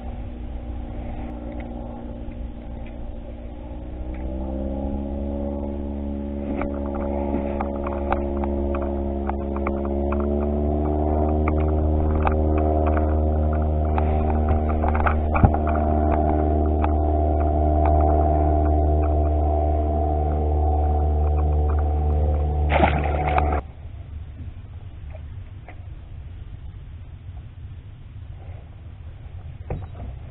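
A boat's outboard motor running, climbing in pitch as it revs up about 4 to 11 seconds in. It holds a steady pitch, then cuts off suddenly about 23 seconds in, leaving quieter wind and water noise.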